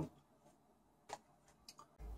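Near silence with a few faint, short clicks: one about a second in and two more close together near the end.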